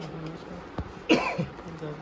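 A person coughs once, sharply, a little past the middle; it is the loudest sound here. A short click comes just before it.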